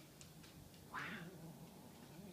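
One short, breathy vocal sound from a child about a second in, like a quick exhaled laugh or huff, against a quiet room.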